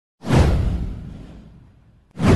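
A whoosh sound effect with a deep boom under it. It swells in suddenly about a quarter second in, sweeps down in pitch, and dies away over about a second and a half.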